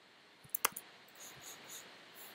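Computer mouse clicking: a quick cluster of sharp clicks about half a second in, then a few faint, soft ticks.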